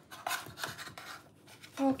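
Metal spoon scraping against a baking tray while a piece of pie is dug out, a few short scrapes in the first second or so.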